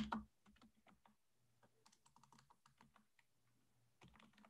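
Faint computer keyboard typing: scattered soft key clicks, slightly louder right at the start.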